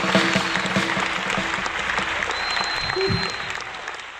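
Audience applauding a live band, with a few stray instrument notes ringing over it. It fades out near the end.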